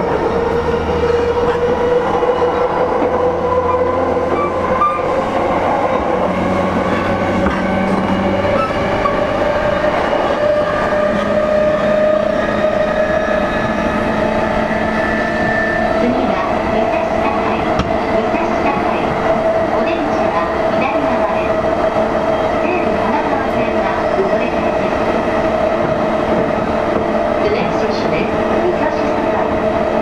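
Running noise heard aboard an E233-series electric motor car: the traction motor whine rises slowly in pitch as the train gathers speed, then holds steady, over the constant rumble of wheels on rail.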